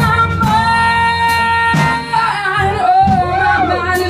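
Female blues vocal held on one long high note, then bending and wavering up and down through a wordless run, over live instrumental backing.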